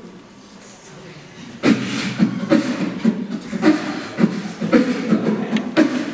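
A beatboxer doing vocal percussion into a handheld microphone over a hall PA. A fast beat of mouth-made kick, snare and hi-hat sounds, about three to four hits a second with low hummed bass tones, starts about a second and a half in and stops just before the end.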